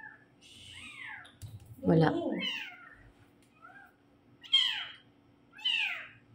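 A cat meowing repeatedly: several short meows, each sliding down in pitch.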